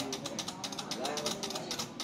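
A rapid, irregular series of light clicks under faint voices in the background.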